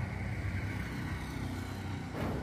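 A steady low motor hum with a faint hiss above it.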